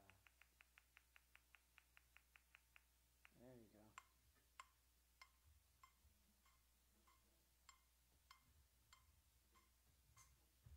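Faint metronome click being set: a fast even run of ticks for about three seconds, a short hum, then a steady click at about one and a half beats a second.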